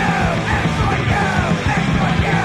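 Hardcore punk song: a shouted vocal over a loud, full band of distorted guitar, bass and drums.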